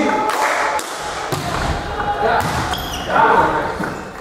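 A volleyball thudding a few times as it is bounced and hit in a gym hall, with players' voices calling out.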